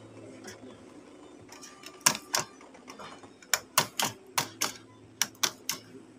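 Brother MFC-J3720 inkjet printer's mechanism clicking: two sharp clicks about two seconds in, then a quicker run of about eight clicks, over a faint steady hum.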